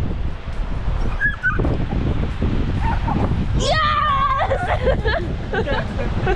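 A dog lets out a high whining cry lasting about a second, then a few short yips, over steady wind buffeting the microphone.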